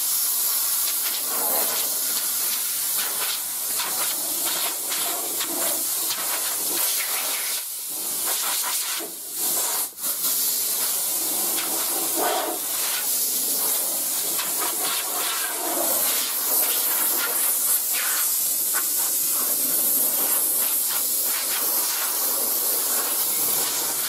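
Compressed-air blow gun hissing steadily as it blows dust off a sanded, primed car body before painting, with a brief break a little before halfway.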